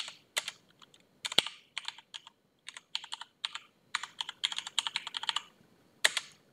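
Typing on a computer keyboard: quick key clicks in short irregular runs, with a brief pause about two seconds in and a dense run near the end.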